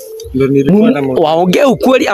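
A man's voice in drawn-out, wordless exclamations.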